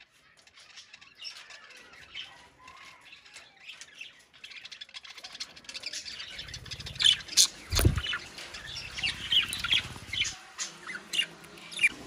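Budgerigars chirping, faint at first and busier and louder from about halfway through. A single thump sounds a little past halfway.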